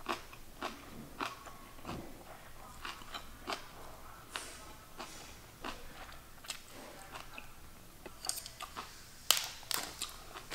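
Close-miked chewing of a mouthful of collard green leaf and rice: wet crunching and small mouth clicks at irregular intervals. Near the end come two louder, sharper cracks.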